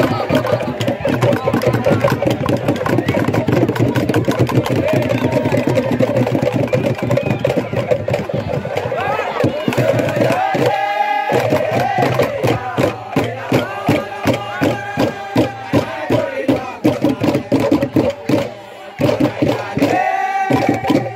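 A large group of male dancers chanting together. About halfway there is a short break, then a high held call, and the chant resumes over a regular beat of sharp percussive strikes.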